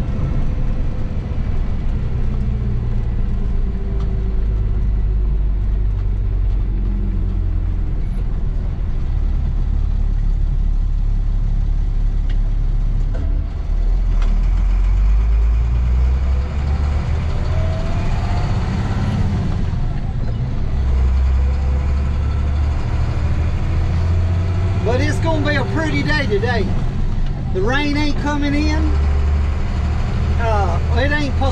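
Bucket truck's engine heard from inside the cab while driving: a steady low drone that rises in pitch as the truck picks up speed about two-thirds of the way through.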